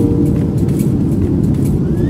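Steady low rush of cabin noise aboard a Boeing 737-700 in flight, the CFM56-7B engines and airflow heard from a window seat. The last notes of music fade out right at the start.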